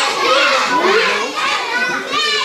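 A room full of young children talking and shouting at once, many excited voices overlapping.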